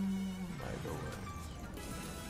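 A man's held low 'mm' hum, steady and buzzy, stops about half a second in. Quieter online slot-game sounds follow: reels landing and the game's music.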